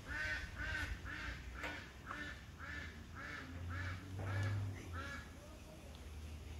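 A bird calling in a fast series of about ten short, arched calls, roughly two a second, with a low rumble swelling underneath in the second half.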